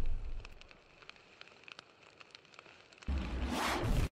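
Fire sound effects on an animated outro: a rumbling burst fades out in the first half second, faint crackles follow, and a second loud, sudden burst with a deep rumble starts about three seconds in.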